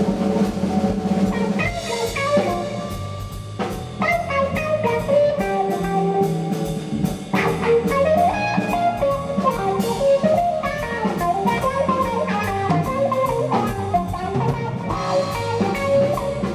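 Live band instrumental passage: electric guitar playing a lead line with bent notes over bass guitar and a drum kit.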